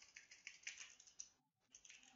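Faint typing on a computer keyboard, a run of quick keystrokes with a short break a little past the middle.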